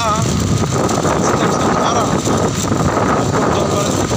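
Steady rush of wind on the microphone mixed with the running of a motorcycle and its tyre noise while riding along a road.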